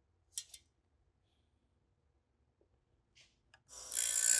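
A few faint, brief metal scrapes and clicks of a piston ring and feeler gauge in a cylinder bore. Near the end, a powered piston-ring filer's abrasive wheel starts grinding the ring's end gap, a loud, even rasp.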